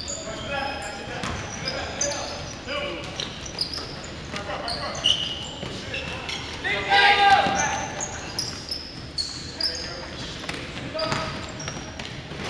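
Pickup basketball game in an echoing gym: sneakers squeaking on the hardwood court, the ball bouncing, and players calling out, with a loud shout about seven seconds in.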